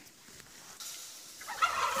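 A turkey gobbling faintly in the background. It is very quiet at first and grows louder over the last half second or so.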